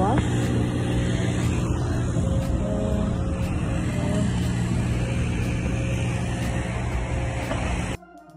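Steady low rumble of a vehicle engine with a constant low hum, cutting off suddenly at the end.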